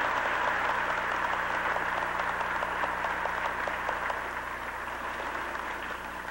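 Crowd applauding: a dense, even clatter of many hands clapping that fades slightly toward the end.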